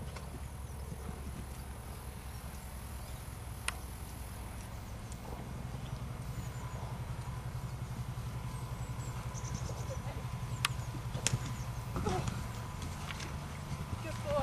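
Horse cantering and jumping on a sand arena: soft, muffled hoofbeats with a few sharp clicks along the way.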